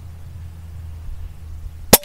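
A single shot from an FX Maverick pre-charged air rifle firing an H&N 25-grain slug: one sharp crack near the end, over a low steady hum.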